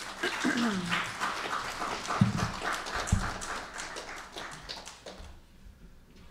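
Audience applauding for about five seconds, dying away near the end, with a throat being cleared near the start and two low thumps in the middle.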